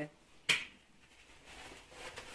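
A single short, sharp click about half a second in, followed by faint handling noise.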